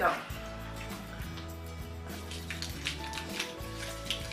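Crinkling and rustling of small candy wrappers as individually wrapped chocolate pieces are unwrapped by hand, in many small irregular crackles, over steady background music.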